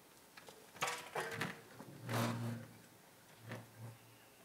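Scattered shuffles and knocks from a band settling in before it plays, with a couple of brief low hums, the loudest about two seconds in. No music is playing yet.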